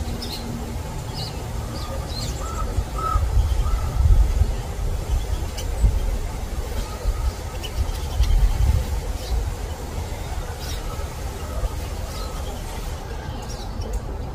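Wild birds calling in the background: scattered short, high chips and a few brief calls, over a steady low rumble.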